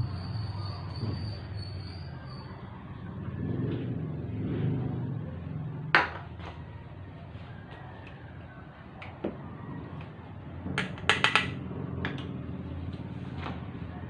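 A metal spoon stirring sliced ginger and cooking oil in a metal pot, giving a few sharp clinks against the pot: one about six seconds in and a quick cluster of several around eleven seconds. A steady low rumble runs underneath.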